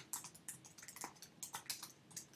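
Typing on a computer keyboard: a quick, uneven run of about a dozen quiet key clicks as a word is typed out.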